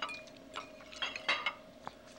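Cutlery clinking against dinner plates while eating, a few light clinks with brief ringing, the strongest about a second in.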